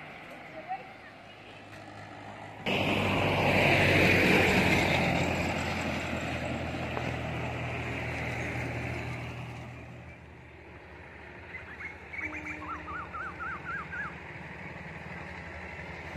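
A motor vehicle's engine running past on the road: the noise comes in suddenly, is loudest a little after it starts, and fades away over several seconds. Near the end, a short run of quick chirps.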